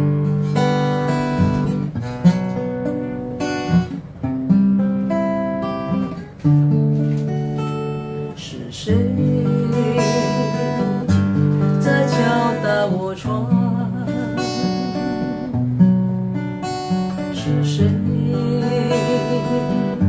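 Acoustic guitar strummed in a slow chordal song intro, the chords changing every second or two; it starts with a strong strum right at the beginning.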